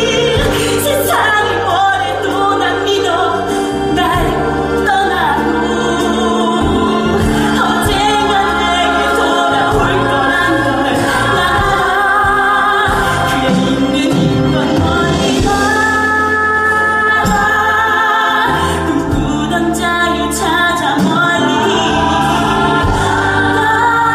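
A woman singing a musical-theatre ballad through a headset microphone, with instrumental accompaniment holding steady low notes beneath her voice.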